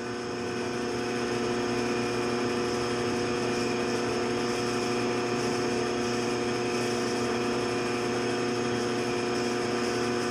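A 1952 Shopsmith 10ER running steadily, its constant-speed 1725 RPM AC motor driving the factory speed changer and slow-speed reduction pulleys, with the headstock spindle turning at about 412 RPM. It is an even machine hum with several held tones.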